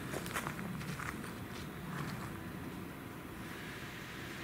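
Footsteps of a person walking, a few short steps mostly in the first two seconds, over a low steady background hiss.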